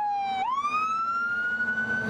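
Emergency vehicle's siren wailing as the vehicle drives past. The tone falls, then about half a second in sweeps sharply back up and keeps climbing slowly.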